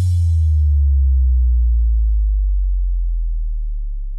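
A deep synthesized sub-bass tone, the kind of 808 bass used in trap, sliding down in pitch in steps and then held very low as it slowly fades. It is the tail of the remix's final bass hit.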